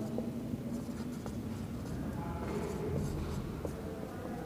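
Marker pen writing on a whiteboard: a run of short, faint scratching strokes with small ticks as the tip meets the board.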